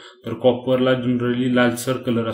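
A man's voice talking in a slow, even narration, after a short pause at the start.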